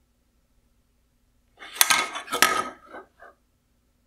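A printed circuit board clattering against a wooden workbench as it is turned over in a gloved hand: two sharp clicks about two and two and a half seconds in, then a few lighter taps.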